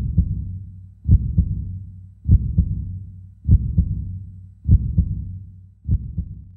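A heartbeat sound effect: low double thumps, one pair about every 1.2 seconds, over a steady low hum.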